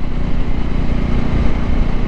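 Voge 300 Rally's single-cylinder engine running steadily while the motorcycle is ridden at low road speed, with no change in revs.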